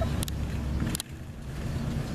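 A vehicle driving slowly past, a steady low engine rumble, with two sharp clicks about a quarter-second and a second in.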